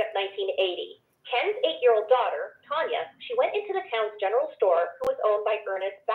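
Continuous talking with only brief pauses, the voice thin and cut off at the top, as heard over a telephone line.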